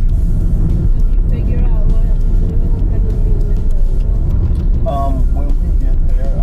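Steady low road and engine rumble inside a moving car's cabin, with music and a voice heard over it, the voice rising about a second and a half in and again near the end.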